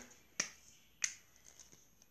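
Two short, sharp clicks about two-thirds of a second apart.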